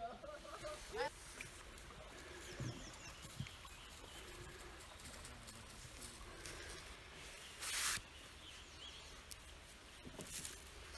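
Quiet riverside ambience with faint bird chirps. A short rising vocal call comes about a second in, and a brief rushing noise comes about eight seconds in.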